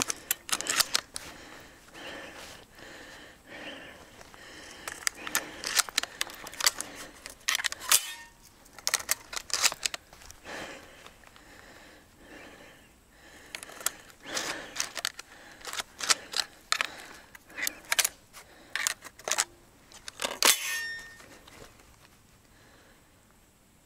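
A small boat being paddled across a pond through the reeds: irregular splashes of the paddle and short knocks and clatters against the hull, coming in clusters with quieter spells between.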